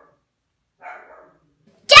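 A dog barks once, faintly, about a second in. Right at the end a woman starts a loud shout.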